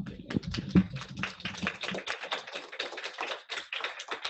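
A quick, dense run of sharp taps and clicks close to the microphone, several a second, with one heavier thump about a second in.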